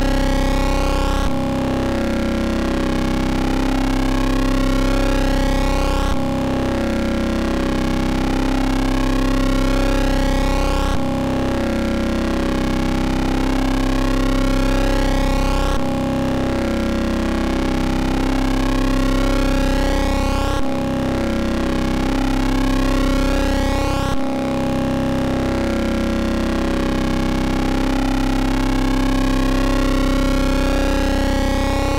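A Eurorack modular synthesizer patch built around a Rossum Trident complex oscillator spliced through a Klavis Mixwitch plays a steady, distorted, buzzy tone on one held pitch. Its timbre cycles in a repeating pattern that jumps abruptly every four to five seconds as the modulation of the main pulse wave is being set.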